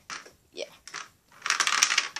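Hard plastic clattering and rattling, loudest for just under a second in the second half, as a Lego Power Functions battery box is set down on a Lego baseplate, after a few small clicks.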